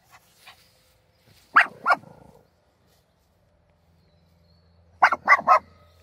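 Small Shih Tzu barking: two sharp barks, then a quick run of four near the end.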